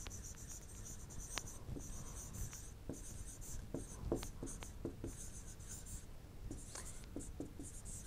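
Faint ticks and scratches of a stylus writing by hand on a pen tablet, a short stroke every half second or so.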